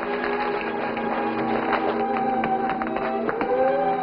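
Background music from the drama's score: several held notes with short struck notes over them, and one note gliding upward near the end.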